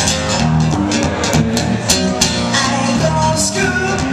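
Live acoustic-electric guitar strummed steadily, with a male voice singing over it, amplified through a PA system.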